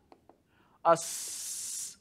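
A man's voice saying a short 'a' that runs straight into a drawn-out hissing 's', held for about a second.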